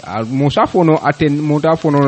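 Speech only: a man talking steadily without pause.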